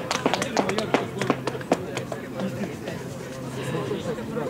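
Voices of players calling out on an outdoor football pitch, with a quick run of sharp clicks over the first two seconds that then dies away.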